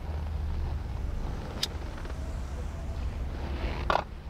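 Steady low rumble of a car's engine and road noise heard inside the cabin. A sharp click comes about a second and a half in, and a short, louder noise just before the end.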